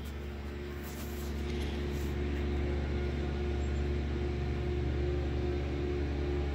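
Steady low mechanical hum of a running motor, with a few fixed pitches in it, growing a little louder after about a second.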